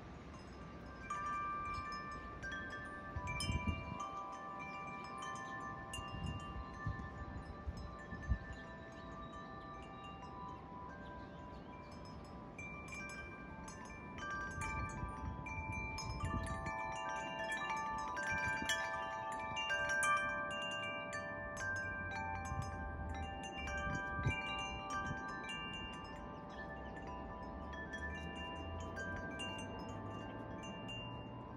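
Metal tube wind chime ringing in the wind, many clear tones struck at random and overlapping as they ring on, busier in the second half. Low rumbles of wind on the microphone come and go underneath.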